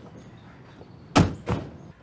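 Two car doors slamming shut in quick succession, the second about a third of a second after the first and a little quieter.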